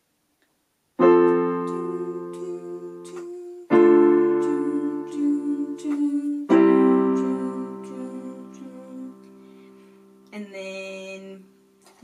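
Casio electronic keyboard on a piano voice playing a slow progression of four chords, beginning about a second in, each struck and left to ring and fade, with a few lighter notes played over them.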